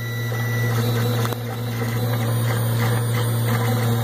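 3D printer running a print: stepper motors driving a 3D-printed plastic gearbox, fitted with a new 5 mm drive shaft and still breaking in, with a steady hum. A thin high tone stops under a second in.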